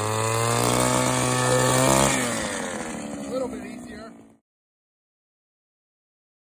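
Small two-stroke engine of a gas-powered ice auger running at speed as it bores through thick lake ice, then winding down about two seconds in, its pitch falling and the sound fading before it cuts off about four seconds in.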